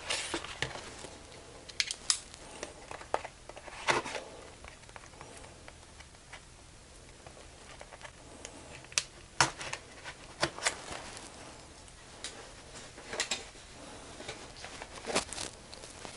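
Small knife cutting the seals of small cardboard product boxes, with scattered short scrapes, taps and clicks as the boxes are handled and set down.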